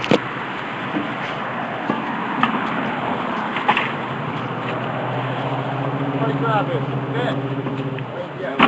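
Street ambience of road traffic with a steady low engine hum that grows stronger after about five seconds. A few sharp knocks come from the microphone being handled, and faint distant voices can be heard.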